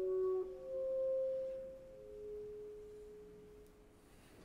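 Clarinet playing long, nearly pure held notes in a slow step downward, the last note fading away near the end.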